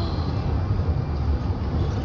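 Steady low rumble of road and engine noise heard inside the cabin of a moving car driving across a bridge.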